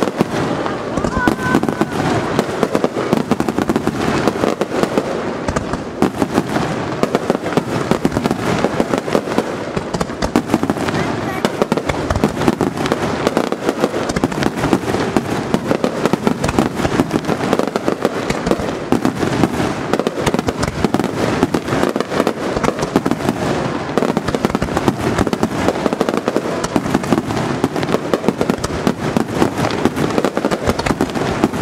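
Starmine fireworks barrage: aerial shells bursting in rapid, unbroken succession, a dense stream of booms and crackle with no pause.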